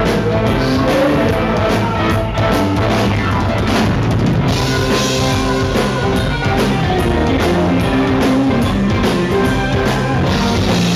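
Live Texas blues-rock band playing: electric guitars over a drum kit, loud and unbroken.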